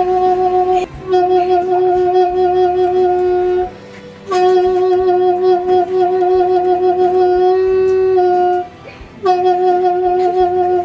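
Side-blown animal horn sounded on one steady note in long blasts. There are short breaks between the blasts, and the pitch rises slightly near the end of the longest one. A new blast starts near the end.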